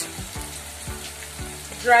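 Vegetable sauce frying in a pot, a steady low sizzle with a few soft low thuds.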